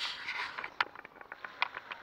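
Handling noise from a small camera held against the panel: about half a second of fabric rubbing over the microphone, then a scatter of light clicks and taps.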